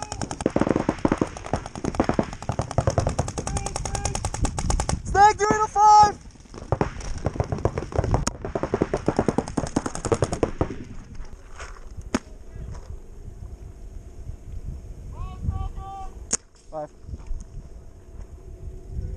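Paintball markers firing fast strings of shots for about ten seconds, then only a few single shots.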